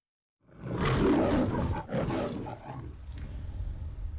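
The Metro-Goldwyn-Mayer lion's recorded roar: two loud roars starting about half a second in, the second shorter, followed by a quieter trailing rumble that fades near the end.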